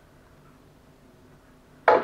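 Quiet room tone, then near the end a sudden sharp clink with a brief ring, a small jar set down on the table.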